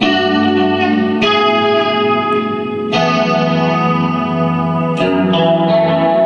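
Electric guitar played through an effects pedalboard: chords struck and left ringing, a new one about every one to two seconds.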